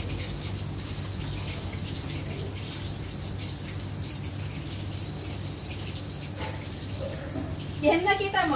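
A steady low machine hum, with faint voices of people talking nearby; a louder voice breaks in at the very end.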